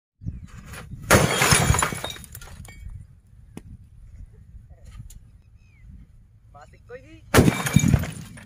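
Sutli bomb (jute-string-wrapped firecracker) blasts going off inside an old CRT television and breaking it apart: a loud burst about a second in and another near the end, with quieter crackle between.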